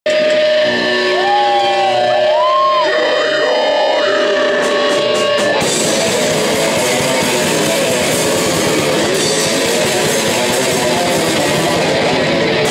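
Death metal band playing live in a hall: a held electric guitar note with pitch bends for about the first five seconds, then the full band comes in with guitars and drums, loud and dense.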